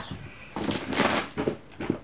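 Rustling and light clicks from items being handled and moved: a burst of rustling about half a second in, then a few small clicks near the end.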